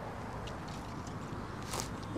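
Quiet steady background hiss, with a short breath near the end as he bends forward under the barbell in a seated good morning.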